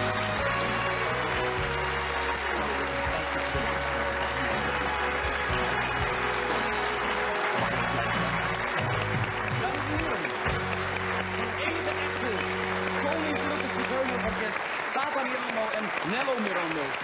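Studio audience applauding over instrumental music with a deep bass line; the music stops about two seconds before the end while the clapping goes on.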